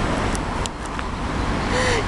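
Road traffic noise from cars on a nearby city street: a steady rush that thins out after about a second.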